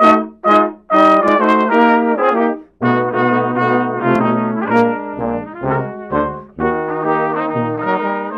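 Brass quintet of trumpets, French horn, trombone and tuba playing: two short accented chords open, then sustained chords follow, with a low bass line joining about three seconds in.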